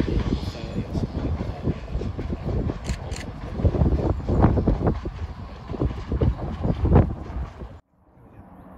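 Wind buffeting the microphone, gusting unevenly over the fading run of a West Midlands Railway diesel multiple unit pulling away. The sound cuts off suddenly just before the end.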